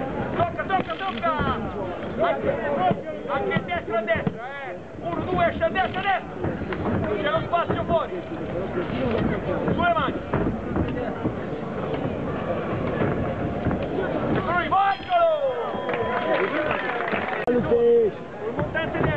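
Many voices talking and calling out at once, overlapping, with no single clear speaker: the chatter of a crowd of spectators.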